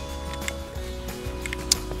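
Background music with sustained notes, and a couple of faint clicks from the camera slider's built-in legs being set into their notched locks.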